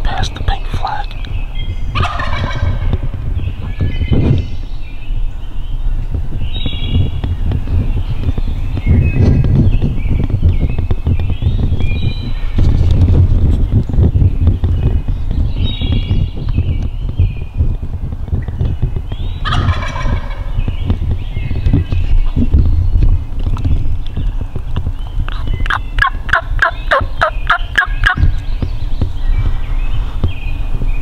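A wild turkey tom gobbling several times, including a longer rattling gobble near the end, with small birds chirping in between. A steady low rumble runs beneath.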